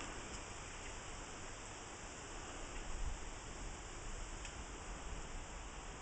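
Steady outdoor background noise: an even hiss over a low rumble, with no clear event, only a couple of faint ticks.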